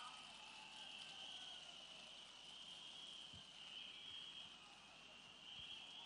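Near silence: faint background hiss with a thin, steady high-pitched tone.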